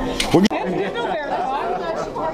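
Voices talking, then after an abrupt cut about half a second in, several people chattering in a large room.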